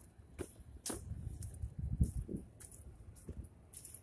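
Irregular footsteps and knocks from handling a handheld camera while walking, over a low rumble, with a few sharp clicks.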